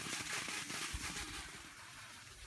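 Cross-country skis gliding over a groomed snow track, an even hiss that grows quieter in the second half.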